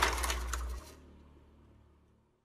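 A short burst of rapid, irregular mechanical clicking and crackle over a low hum, fading out within about a second.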